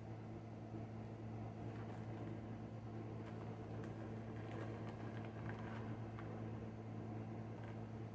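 Faint crinkling and rustling of a paper disposable Kirby vacuum bag being unfolded by hand, heaviest around the middle, over a steady low hum.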